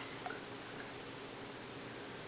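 Quiet room tone with a faint steady hiss and one small tick about a quarter second in.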